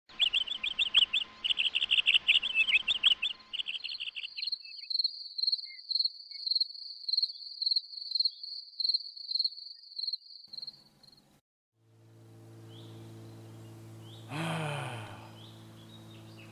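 Insects chirping: a dense, fast high trill for about three seconds, then a single high, steady cricket-like song pulsing a little more than once a second until around eleven seconds in. After a brief break a low steady hum sets in, with a short voice-like sound near the end.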